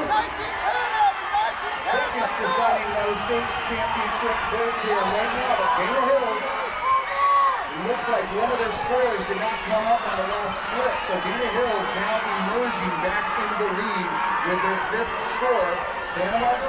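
Many voices of a crowd talking and calling out at once, a steady babble in which no single speaker stands out.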